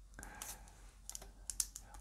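Faint handling sounds of a plastic-wrapped smartphone being lifted out of its cardboard box tray: light rubbing, then a few small sharp clicks in the second half.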